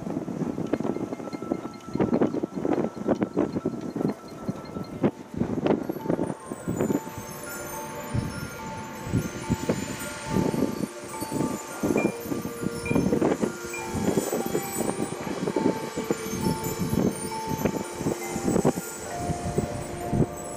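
High school marching band playing: repeated percussion strikes under held notes from the winds, which grow fuller about six seconds in, with a bright chime-like shimmer from the front ensemble's mallet percussion.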